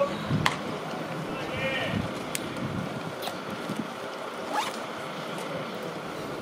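Open-air ballpark ambience from the stands: a steady rush of background noise with faint spectator voices, broken by a few short sharp clicks.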